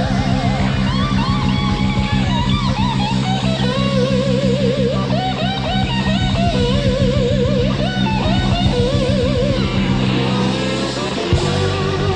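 Live blues-rock band playing an instrumental passage: a lead electric guitar soloing with wide vibrato and string bends over a held low chord and a steady drumbeat. The chord changes near the end.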